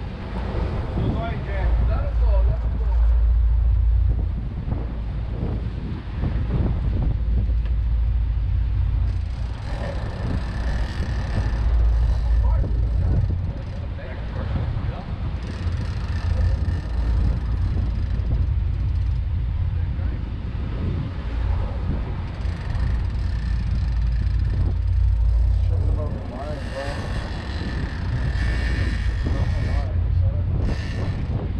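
Low, steady rumble of the boat's engines running, mixed with wind on the microphone, with several stretches of higher hiss.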